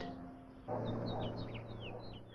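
A small bird chirps faintly, a quick series of about ten short, falling chirps, over a steady low hum.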